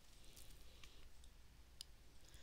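Near silence: quiet room tone with a few faint, sharp clicks, the clearest near the end.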